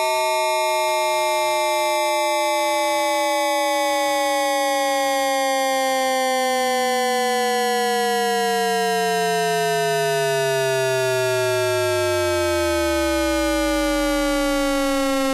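Electronically processed meme audio run through an AM carrier effect: a dense cluster of sustained synthetic tones, all gliding slowly and steadily downward together like a siren. The lowest tone sinks to a deep hum near the end.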